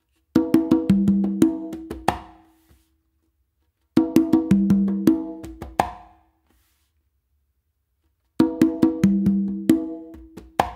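Conga drums played by hand in a salsa tumbao: open tones on the conga and the lower tumba, mixed with slaps and ghost notes. A two-second phrase of strokes is played three times, with short silences between.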